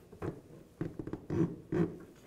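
A sharp, pointed wire-routing tool being worked back and forth through a rubber firewall grommet, rubbing and scraping against the rubber in a few short strokes.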